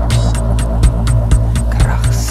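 Electronic music: a deep, droning bass under a steady beat of sharp percussion ticks, about four a second.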